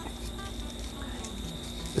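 Outdoor background: a steady, high-pitched insect drone with a low rumble underneath.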